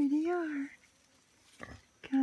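A woman's voice in one drawn-out, arching 'ohh' of delight lasting under a second, followed by a brief low rustle near the end.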